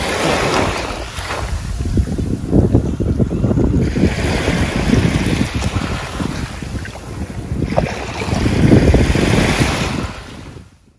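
Small sea waves washing in and draining back against a bank of beached dead seagrass, in a steady rush with two louder surges: one about a second in and one near the end.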